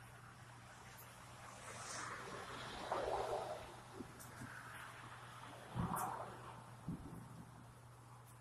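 Wind gusting through pine trees, faint, swelling twice, about three and six seconds in, with a few low thumps of wind on the microphone.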